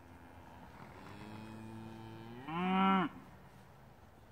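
Highland cow mooing: one long moo that starts low and steady, then rises in pitch and grows loud for its last half-second before breaking off.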